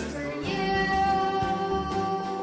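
A song with a high singing voice holding one long note over the backing music.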